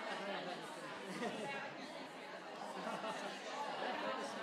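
A roomful of people talking among themselves at once: many overlapping conversations merging into a steady babble of chatter.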